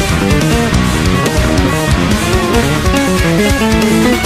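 Fast two-handed tapped runs played in unison on electric bass, electric guitar and synthesizer keyboard, a rapid, dense progressive-metal instrumental passage.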